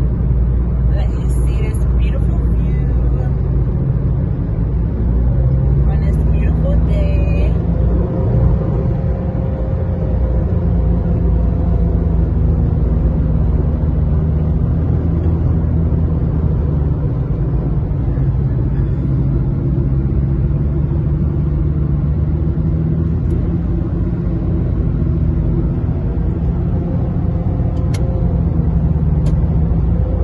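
Steady road and engine noise inside a car cruising at highway speed, with an engine hum whose pitch drifts slowly up and down. There are brief hissy patches about a second in and again around six seconds.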